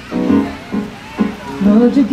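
Yamaha S90 ES keyboard playing a few chords between sung lines, each struck and then fading; a woman's singing voice comes back in near the end.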